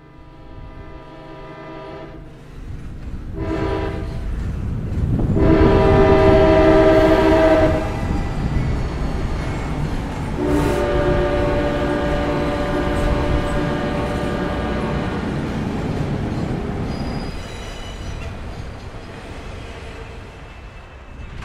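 A train passing with its horn sounding several blasts: two shorter ones early on, a loud long blast about five to eight seconds in, and another long blast from about ten to seventeen seconds. Underneath runs the rumble of the wheels on the rails, which fades near the end.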